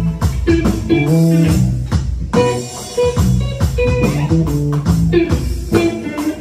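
Rock band playing an instrumental passage: electric guitars and bass guitar over an electronic drum kit keeping a steady beat, with no singing.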